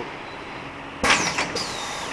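Balloon printing machine running with a steady mechanical noise. About a second in there is a sudden clack with a hiss, and then a high falling tone twice.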